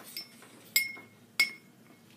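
Three light, sharp clinks about half a second apart, each leaving a brief high ringing tone, like a small hard metal object tapping against something.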